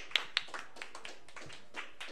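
Scattered applause from a small audience: a few loud claps at the start that thin out to occasional ones.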